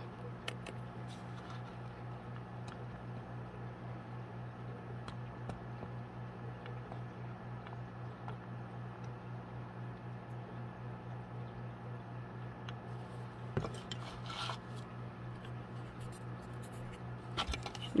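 Faint handling of small MDF craft pieces and a plastic glue bottle on a desk: light clicks, scrapes and rubbing, with one sharper knock about three-quarters of the way through and a short scratchy rustle just after, over a steady low hum.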